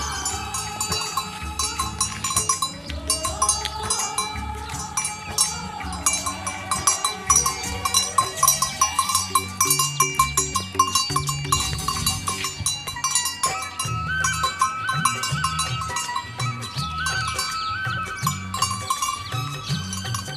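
A bell hanging from a cow's neck clanks irregularly as the cow walks, over background music with a steady bass line.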